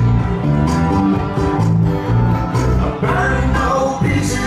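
Live country string band playing, with acoustic guitar strumming over electric bass notes that change about every half-second.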